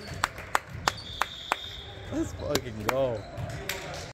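A string of sharp hand slaps with a hall echo, about eight irregular smacks, as volleyball players slap hands in a post-match handshake line. Faint voices are in the background.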